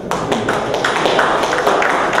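A small group of people applauding. The clapping breaks out suddenly and keeps going steadily.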